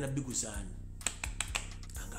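A man's voice trails off at the start, then a low background music bed with a soft steady beat, marked by several sharp clicks through the middle and near the end.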